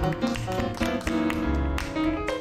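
Live flamenco-jazz band playing, with sharp flamenco hand claps (palmas) over piano, bass and drums.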